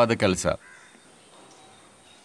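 A man's voice speaking, breaking off about half a second in, followed by a pause with only faint outdoor background sound.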